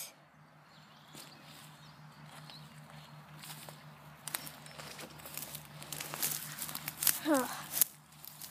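Footsteps through dry grass and dead stalks, the stems crackling and rustling underfoot. The crackles are faint at first and come thicker from about four seconds in.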